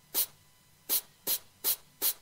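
About five short, sharp bursts of hiss, unevenly spaced, with quiet between them.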